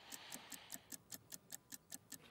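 Faint, fast, even ticking, about five ticks a second: a clock-tick sound effect that runs with an on-screen sales countdown timer. A faint breathy hiss sits under it in the first second.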